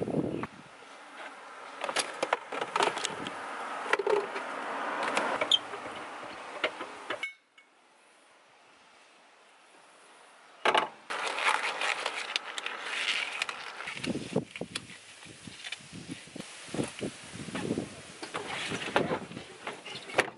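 Knocks and rustling from handling things in a car trunk as a steel-wheeled spare tire is lifted out, with a few seconds of near silence in the middle.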